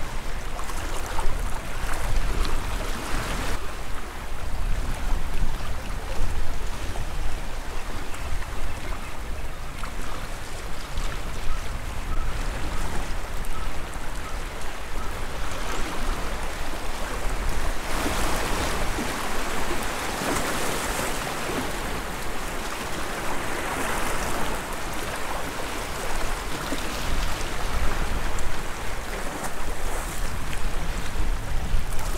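Sea washing and surging around rocks on the shore, with wind buffeting the microphone as a low rumble. The wash swells louder about two-thirds of the way through.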